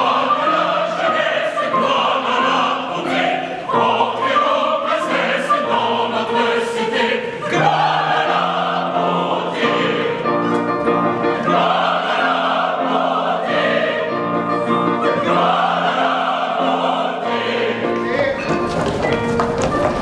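Opera chorus singing together in a lively ensemble number, with short repeated notes in its middle part.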